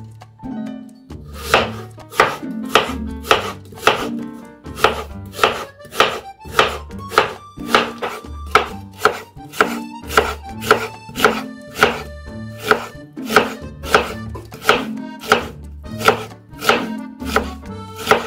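Knife slicing an onion on a wooden cutting board, a steady knock about twice a second, starting about a second and a half in. Background music plays underneath.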